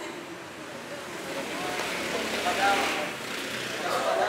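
Voices of a small crowd of onlookers chattering and calling out, swelling to their loudest about two and a half seconds in.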